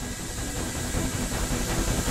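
Dramatic background score: a low rumbling swell with faint held notes, growing slowly louder.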